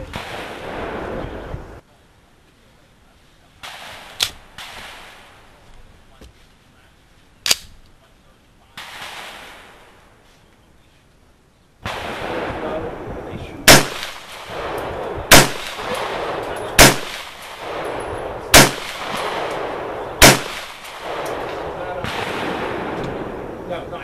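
A 300 Blackout AR pistol firing subsonic Sellier & Bellot rounds: five loud, sharp shots spaced about a second and a half apart in the second half. Two fainter reports come earlier.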